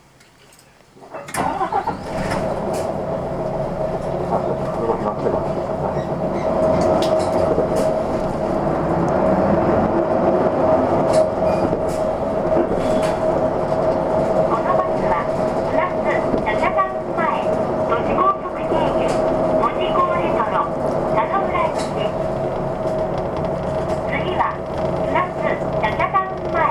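The diesel engine of a Hino Blue Ribbon II city bus starting up about a second in, then running steadily with a constant whine as the bus pulls away and drives on, heard inside the cabin.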